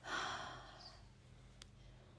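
A single audible breath from the woman about to speak, close to the microphone, loudest at the start and fading away within about a second, followed by faint room tone.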